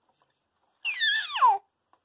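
Baby's high-pitched squeal, about a second in, gliding steeply down in pitch and lasting under a second.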